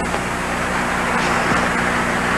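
Steady background hiss with a low hum, the noise of an old archival recording.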